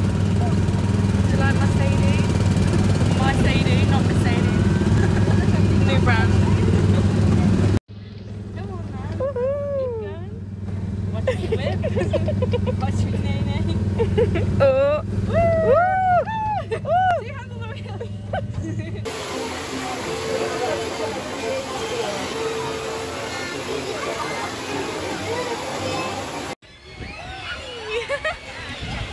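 Small open-top ride car's engine running with a steady low hum for the first two-thirds, with high gliding sounds over it in the middle stretch. The engine then drops out, leaving a softer background of voices and park noise.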